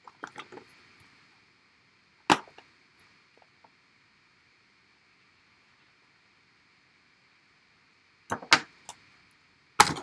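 Handling noise from paper-crafting supplies on a tabletop: a few light taps, then one sharp click about two seconds in. More clicks and rustling follow near the end as a plastic sheet is moved.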